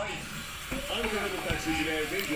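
Children's voices in the background while they play ball indoors, with one dull thud about a second and a half in.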